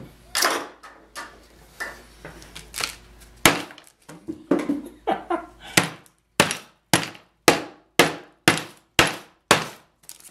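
Old wooden mallet pounding a sheet of wax through release paper on a wooden board, flattening it to an even thickness. Scattered knocks at first, then a steady run of hard blows about two a second over the last four seconds.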